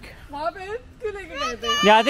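Children's voices talking and calling out, with some adult chatter, a high-pitched child's voice loudest near the end.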